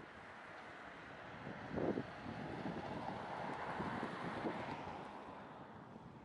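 Wind buffeting the microphone by the sea, with a rushing noise that swells toward the middle and fades near the end, and a short thump about two seconds in.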